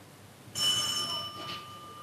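Doorbell sounding once: a single bell-like tone of several pitches starts suddenly about half a second in and fades slowly.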